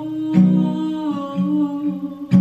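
A woman singing or humming a slow melody in long held notes, with no clear words, over her own strummed acoustic guitar with a capo on the neck.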